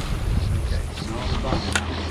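Steady low rumble of a boat's engine idling, with wind buffeting the microphone and faint voices in the background. A sharp click comes near the end.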